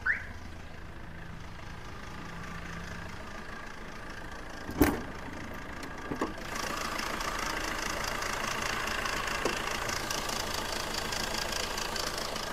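Tata Indica Vista's 1.3 Quadrajet diesel engine idling steadily. There is a sharp thump about five seconds in. From about six and a half seconds the engine sound gets louder and brighter as the bonnet is lifted open.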